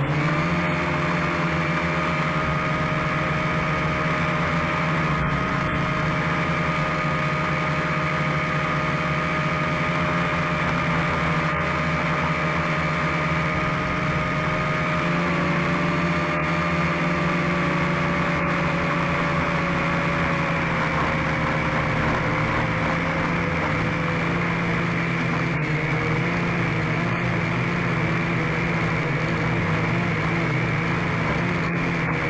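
Camera drone's electric motors and propellers whirring steadily in flight, heard from its onboard camera. The whine rises in pitch right at the start as it lifts off, holds steady, then dips slightly about halfway through and sinks a little lower after that.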